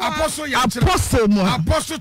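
A voice chanting the same short phrase rapidly and rhythmically, over and over, as in a fervent spoken prayer.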